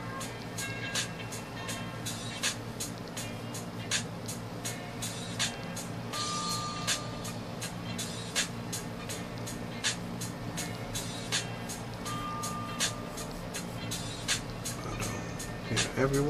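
Background music with a steady beat, about two beats a second, over a steady low drone.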